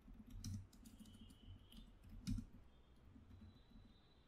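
Faint typing on a computer keyboard: several separate keystrokes at an uneven pace.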